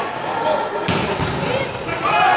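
Volleyball rally in a sports hall: a single sharp hit of the ball a little before halfway through, over a steady background of voices.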